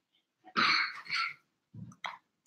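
A person coughing twice in quick succession, about half a second in. A short low sound follows near the end.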